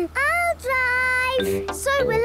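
A cartoon child's voice giving a long, sung-out wordless call: a short rising note, then a long held one, over a low steady hum.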